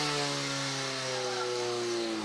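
Portable fire pump engine running at high revs, a steady buzzing note that sinks slowly in pitch, over a hiss of water jets from the hoses.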